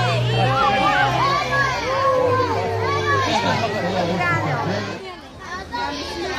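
Many children's voices shouting and chattering excitedly at once, over a steady low hum. The voices drop off sharply about five seconds in.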